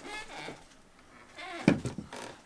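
A single sharp knock about three-quarters of the way through, with faint muttering before it.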